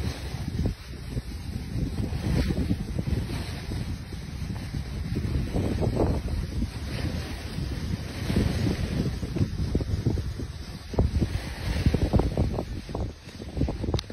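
Wind buffeting a phone's microphone as it moves down a ski slope: an uneven, gusting rumble that rises and falls throughout.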